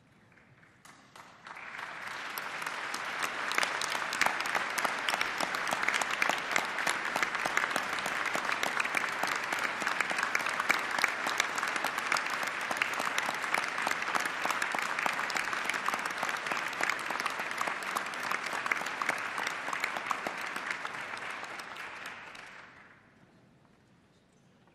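Crowd applauding: dense, even clapping that builds up about a second and a half in, holds steady, then dies away shortly before the end.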